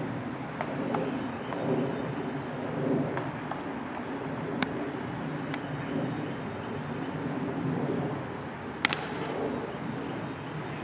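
Open-air background noise on a ball field, with a few faint clicks. About nine seconds in, a single sharp crack of a bat hitting a ball sent out to the outfielder.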